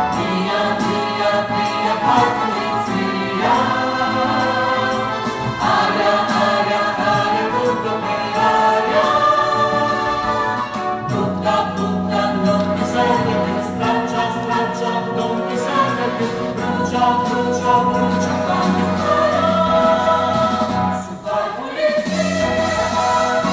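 A chorus of voices singing a stage-musical ensemble number over instrumental accompaniment.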